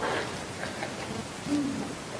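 Quiet room tone in a pause of a talk, with one short, low hummed "mm" from a voice about one and a half seconds in.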